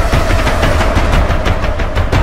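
A street drum troupe beating many drums together in a fast, dense, continuous roll, with heavy low thuds and a steady high note held over the drumming.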